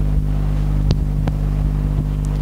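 Steady low room hum, with two short clicks a little after a second in.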